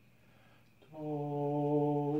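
Unaccompanied voices holding one steady sung note, coming in about a second in after near-quiet room tone.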